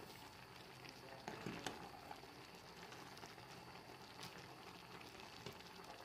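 Faint simmering of a pot of mushroom curry, with a few light clicks of a wooden spoon stirring in the stainless steel pot.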